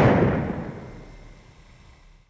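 A single loud bang, hitting just as the picture cuts to black, its rumbling tail dying away slowly over about two seconds.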